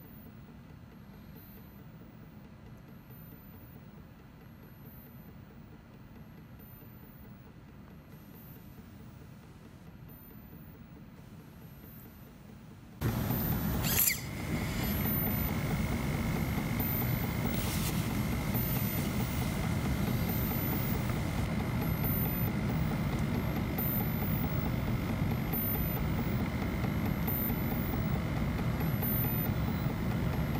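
Faint steady hiss, then a little under halfway through a much louder steady machine noise starts suddenly, with a brief falling sweep that settles into a steady high whine.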